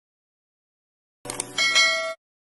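Silence, then about a second and a quarter in, a mouse-click sound effect followed by a short, bright bell chime: the notification-bell sound of a subscribe-button animation.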